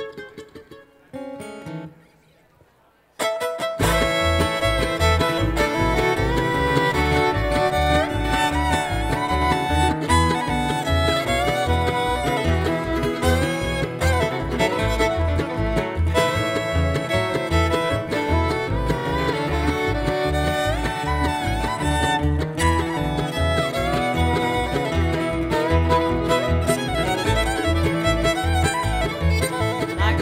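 Live bluegrass band kicking off a song: after a few near-quiet seconds, fiddle, acoustic guitars, mandolin and upright bass come in together about three seconds in and play an instrumental intro over a steady bass beat.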